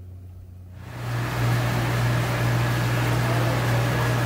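Steady mechanical hum with an even rushing hiss from the aquarium hall's equipment, setting in about a second in over a fainter low hum.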